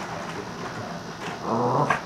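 A Lhasa Apso gives one short, low bark about a second and a half in: a single bark on cue, counting the one finger held up to her.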